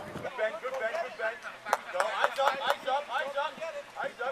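Voices calling out, mostly unclear words, with two sharp knocks about two seconds in.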